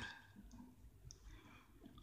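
Near silence, with two faint short clicks.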